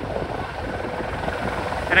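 Distant helicopter coming in to land, heard as a steady rumble of rotor and engine.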